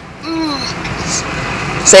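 Clothing and body rustling close to the microphone as a person climbs into a car seat, with a short voiced sound near the start.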